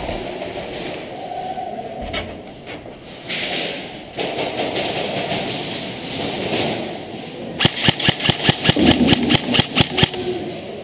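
Airsoft gun firing rapidly, about seven sharp shots a second, for the last two seconds or so. Before that there is a jumble of movement and handling noise from the helmet-mounted camera.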